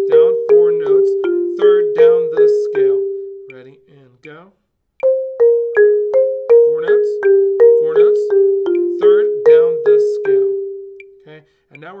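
Marimba struck with yarn mallets, playing an even run of single notes that steps down the scale. It plays two passes with a short break just before the middle, and each bar rings briefly after it is struck.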